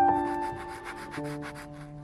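Quick, even strokes of a pastel scratching on paper, about eight a second, growing fainter in the second half. Behind them, slow music holds sustained notes that change about once a second.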